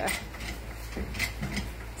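Rubber-stamp vulcanizing press being hand-cranked to squeeze its steel plates together toward about 400 PSI, with a few faint clicks and scrapes from the crank mechanism over a steady low hum.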